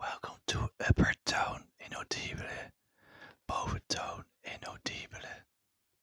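A man whispering close to the microphone in short, unintelligible phrases, stopping about five and a half seconds in.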